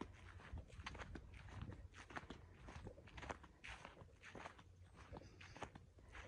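Faint footsteps on grass at a walking pace, about two steps a second.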